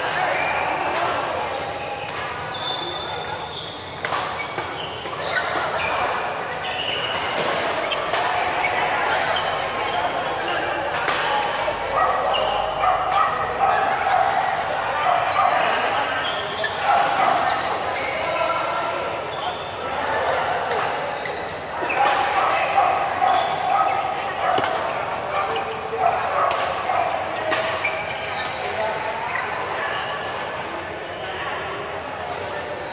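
Badminton rally in a large echoing hall: sharp racket strikes on the shuttlecock every second or so, with short squeaks of shoes on the court floor. Steady chatter of voices runs underneath.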